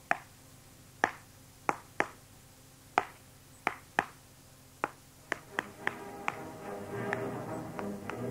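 Radio-drama sound effect of a small hammer tapping at a wall: about a dozen sharp, unevenly spaced taps, roughly two a second. From about six seconds in, incidental music fades in under the last taps and grows louder.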